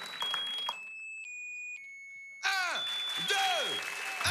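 Electronic tones: a few steady beeps, each lower than the last, then from about halfway a series of quick falling synth sweeps, about two a second.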